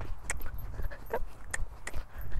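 Pony's hooves striking wet arena sand at a trot: a few short, soft hoofbeats.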